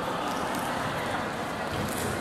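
Steady reverberant sports-hall noise during a shuttlecock (đá cầu) rally, with a soft thud near the end as a player kicks the shuttlecock.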